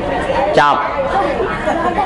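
Speech: a man talking, with the chatter of other voices beneath.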